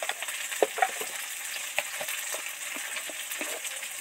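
Tomatoes deep-frying in hot oil: a steady sizzling hiss with scattered small pops and crackles.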